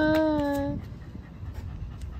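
A dog whining once, a long, slightly falling whine of about a second, followed by quieter panting.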